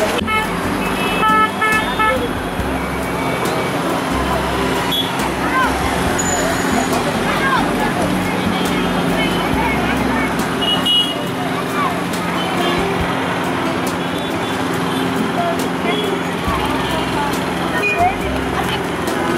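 Busy road traffic of cars and motorbikes with crowd chatter. Short horn toots sound a couple of seconds in and again near the middle.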